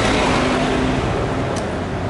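City bus driving past close by, its engine and tyre noise fading as it pulls away.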